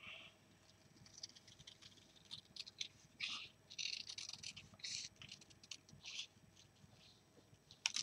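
Small craft scissors snipping scrapbook paper while cutting out a heart shape: a run of short, quiet cuts at an uneven pace.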